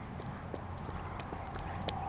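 Faint, irregular footsteps on a concrete sidewalk: a handful of light taps over a quiet outdoor background.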